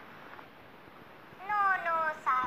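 A cat's meow: one call falling in pitch, starting about one and a half seconds in, over a faint hiss.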